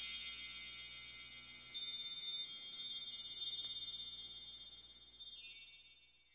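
High tinkling chimes over a sustained shimmer of high ringing tones, with scattered strikes that slowly die away and fade out near the end.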